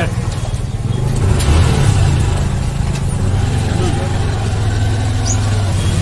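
Low, steady rumble of a motor vehicle engine running close by, with faint voices in the background.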